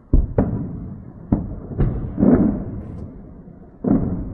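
A run of distant explosions, about six dull booms at irregular spacing, each followed by a low rumble; the one near the middle is the broadest and longest.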